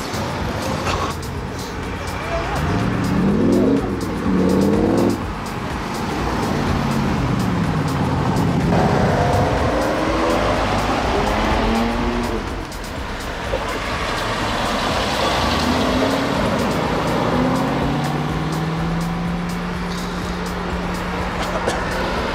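Several performance cars accelerating away one after another, each engine note climbing and dropping back as it shifts gear. The loudest run comes a few seconds in, and a long steadily rising note fills the last few seconds.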